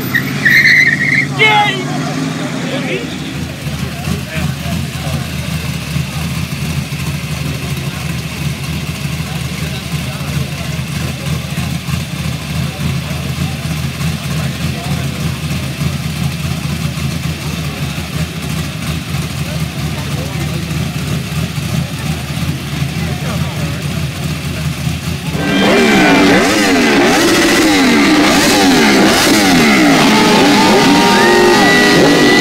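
A car engine runs steadily at low revs in street traffic. About 25 seconds in, this gives way to louder sport-bike engines revving hard, their pitch repeatedly rising and falling, during motorcycle burnouts.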